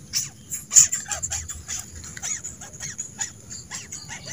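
Small birds chirping in a quick run of short calls, over a steady high-pitched insect drone.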